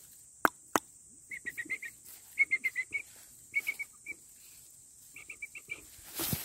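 A bird calling in quick runs of five or six short chirps, repeated several times, after two sharp clicks about half a second in.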